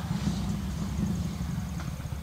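Steady low background rumble, with a faint high thin tone in the second half.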